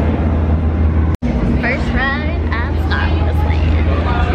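A steady low hum with people's voices over it, broken by a split-second cut to silence about a second in.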